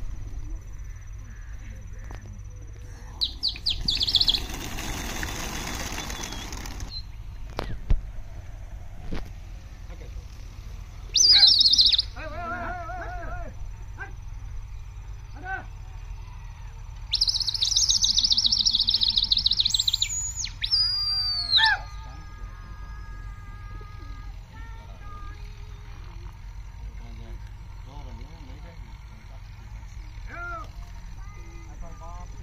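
Birds chirping and trilling in several loud, high bursts, some calls sliding down in pitch near the end of the burst about twenty seconds in. A burst of rushing noise lasting a few seconds comes about four seconds in.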